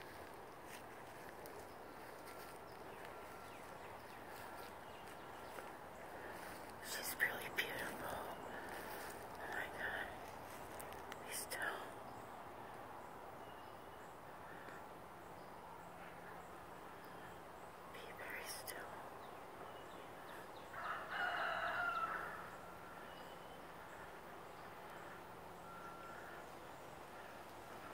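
A rooster crowing once, a faint pitched call lasting about a second and a half near the end, over quiet outdoor background. Several shorter, fainter sounds come before it, a little under halfway in.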